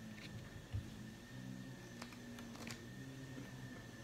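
Quiet room tone with a faint steady hum, a few faint clicks and a soft low thump about three-quarters of a second in.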